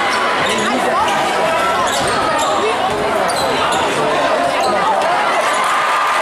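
A basketball bouncing on a hardwood gym floor during live play, under the steady din of a large crowd's many voices echoing in the gym.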